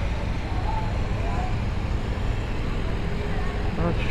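A motorcycle riding slowly through city traffic: a steady low engine and road rumble with the surrounding traffic noise.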